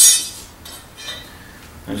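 A single sharp metallic clink at the very start, ringing briefly and fading, then only faint handling sounds.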